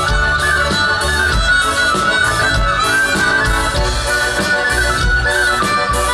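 Live folk band music through a stage PA: an instrumental passage with a bright lead melody moving in short steps over a steady low bass beat.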